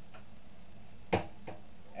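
Two knocks from kitchen items being handled, a sharp one a little over a second in and a lighter one just after, over a steady low hum.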